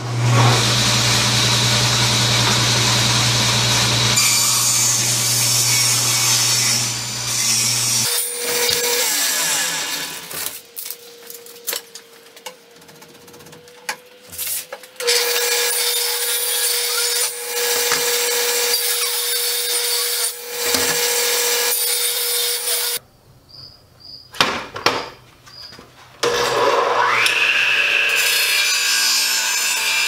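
Electric power saws cutting pallet-wood boards in a run of separate cuts: first a table saw running with a steady hum under the rasp of the blade through wood, then a saw with a steady whine biting into boards again and again. Near the end a saw motor spins up with a rising whine and holds at speed.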